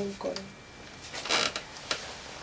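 A wooden bed creaking with bedding rustling as a person gets up off it: a brief creak-and-rustle a little over a second in, then a sharp click near the end.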